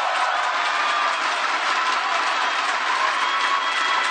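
Crowd of spectators cheering, a steady wash of many voices and noise with no single sound standing out.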